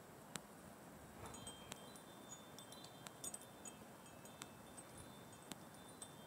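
Near silence with faint high tinkling: scattered light clinks, each followed by a short, thin ringing tone, over a quiet steady hiss.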